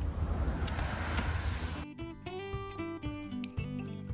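Outdoor background noise with a low rumble, cut off suddenly about two seconds in by acoustic guitar music with plucked and strummed notes.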